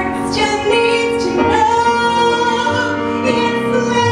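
A woman singing a musical-theatre ballad into a microphone, accompanied by an electric keyboard played with a piano sound; she holds one long note through the middle.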